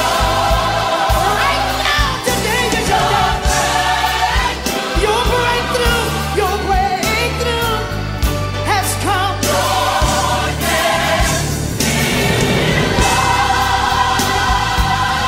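Gospel song: a lead voice and a choir singing over a band with bass and drums.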